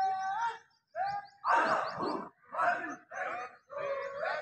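A man's voice calling out drill commands in drawn-out, sing-song tones: a long held call that ends about half a second in, then a string of short calls roughly every half second, in step with the march.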